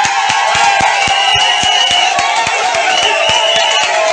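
Loud rhythmic music with a fast steady beat of about four beats a second, sustained held notes, and a high held tone that recurs about every two seconds.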